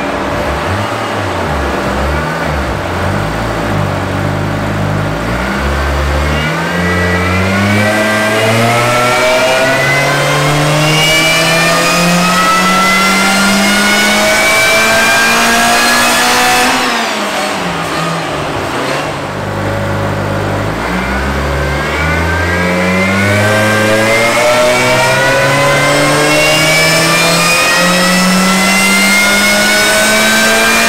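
Subaru Vivio RX-R's supercharged 658 cc four-cylinder engine at full throttle on a hub dynamometer, its revs climbing steadily under load in one long pull. The revs drop back about 17 seconds in, then climb again in a second pull.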